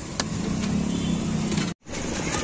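Hot oil sizzling steadily as mungodi fry in an iron kadhai, with a single sharp metal clink of the strainer shortly after the start. A motor vehicle's engine hums past, swelling and fading, before the sound breaks off abruptly near the end.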